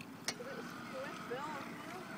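Faint steady whine of the small battery-electric motors of two RC model boats running across a pond, with a sharp click about a third of a second in and faint voices in the background.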